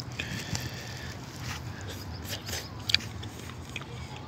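Faint chewing of smoked salmon, with a few small clicks and light crackling.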